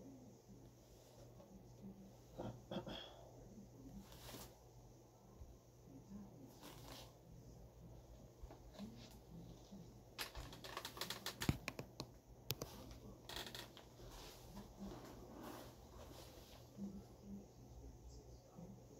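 Faint rustling and clicking of costume armor pieces and a costume helmet being handled and taken off, with a quick run of sharp clicks and knocks about ten to twelve seconds in.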